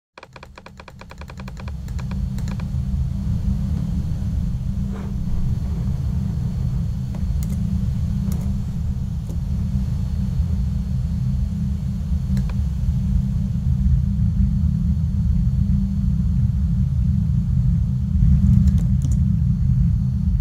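Pseudo-random pink noise test signal limited to the low end (about 20–200 Hz), played into the room as a steady low rumbling hiss. It swells over the first couple of seconds as the signal generator is turned all the way up, then grows slowly louder as the level is raised about 10 dB at the mix console, pushed high to get better coherence in the low frequencies. A few faint clicks are heard over it.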